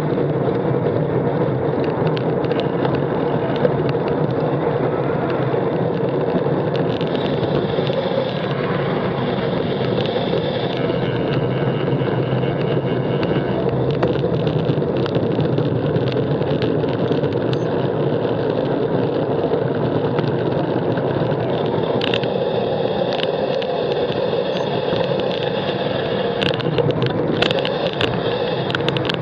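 Steady road noise from a bicycle-mounted camera riding in traffic: wind on the microphone and tyre noise, mixed with the engines of cars and double-decker buses close by, and a few sharp clicks.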